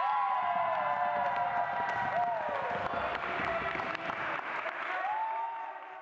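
Voices cheering and whooping over the fading tail of an electronic dance track after its final hit; everything fades out near the end.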